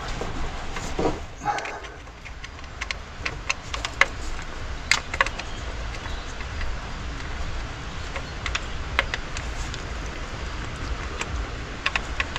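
Scattered light metallic clicks and taps, roughly once a second, as a bolt is worked into place by hand among an engine's fuel filter fittings. A steady low hum runs underneath.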